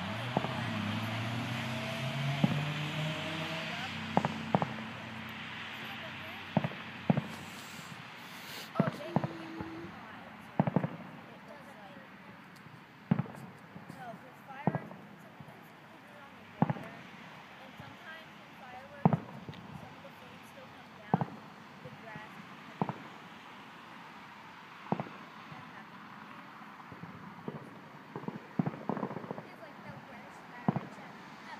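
Fireworks going off as sharp single bangs, one every second or two at uneven spacing, over a steady background hiss. People's voices are heard in the first few seconds.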